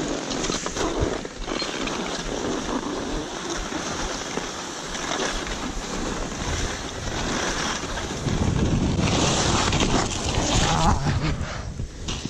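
Skis hissing and scraping over packed snow on a downhill run, with wind rushing over the microphone. It grows louder about two-thirds of the way through as the skier picks up speed.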